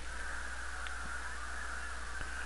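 A steady high-pitched whine held at one pitch, over a constant low electrical hum.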